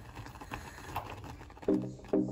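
Thick sauce simmering in a steel pot, with small irregular pops and ticks from bubbles bursting. Background music comes in near the end.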